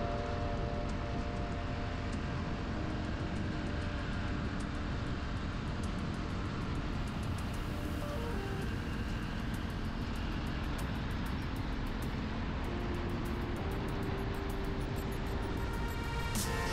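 Steady road and engine rumble of a car driving on a highway, heard from inside the car, under soft background music of held notes that shift about halfway through and again later.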